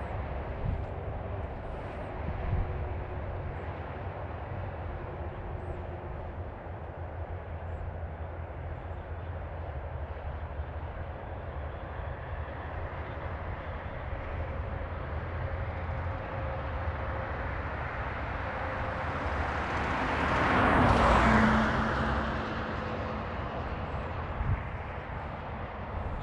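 A car passing on the road, its tyre and engine noise building slowly, peaking about twenty seconds in and then fading away, over a steady low outdoor rumble.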